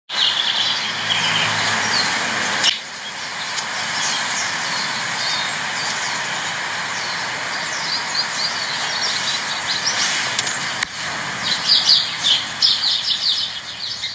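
Birds calling in short, quick high notes over a steady hiss, the calls busiest in the last few seconds.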